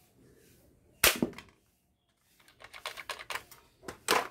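Plastic toy soft-dart pistol: one loud, sharp, shot-like snap with a short ring about a second in, then a quick run of small plastic clicks near the end as the gun is worked by hand.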